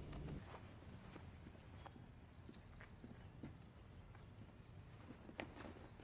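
Near silence with faint, irregularly spaced light taps.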